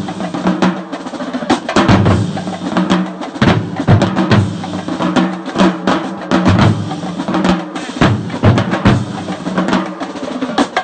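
Marching band drumline in full swing, with marching bass drums and snare drums pounding out a driving, repeated beat. Low brass, such as sousaphones, holds steady notes underneath.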